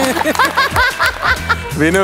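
Laughter in a quick run of short bursts, with background music underneath.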